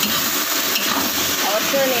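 Chicken pieces sizzling in a wok while a metal spatula stirs and scrapes them, the chicken being fried until its own fat comes out. A voice begins toward the end.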